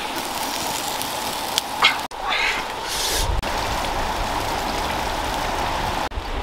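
A young monkey's short, high, wavering squeal of about a second, a little over two seconds in, over a steady outdoor hiss.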